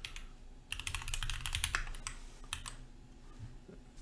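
Typing on a computer keyboard: a quick run of keystrokes starting about a second in, thinning out to a few single clicks toward the end.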